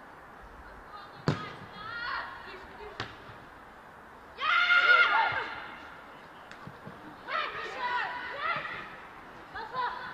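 A football struck hard with a sharp thud about a second in and again around three seconds, followed by players shouting calls to each other across the pitch, the loudest shout near the middle.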